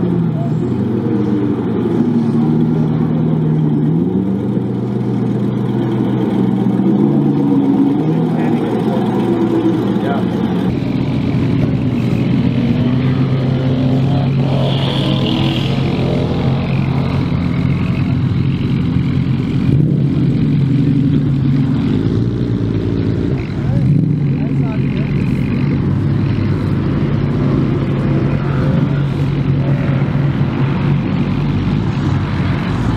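Dodge Challenger SRT Hellcat Widebody's supercharged 6.2-litre HEMI V8 running at low revs, getting louder and fuller about ten seconds in as the car pulls away slowly.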